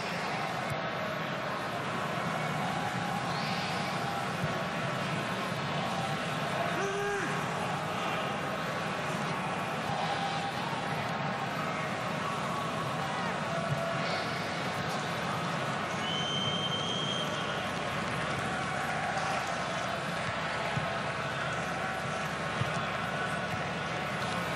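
Stadium crowd noise during play: a steady din of many voices from the stands, with a brief high whistle-like tone about two-thirds of the way through.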